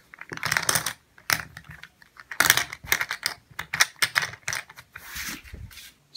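Poker chips clicking against each other as a hand handles a small stack on a felt table: irregular clusters of sharp clicks, with a brief rustle about five seconds in.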